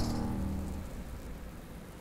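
The low, rumbling tail of a dramatic soundtrack hit, fading steadily away.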